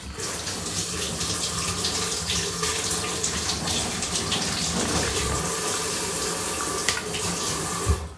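A cat eating close by, a steady run of wet licking and chewing noises as it works at food in a small dish, with a sharp click near the end.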